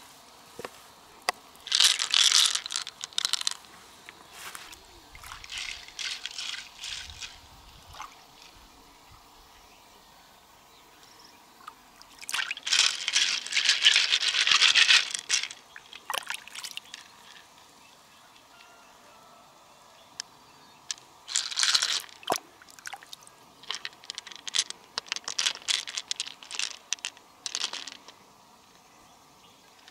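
Water splashing and pouring in several bursts as a large freshwater mussel shell is dipped and rinsed in shallow river water. The longest and loudest burst comes about halfway through, and there are scattered light clicks.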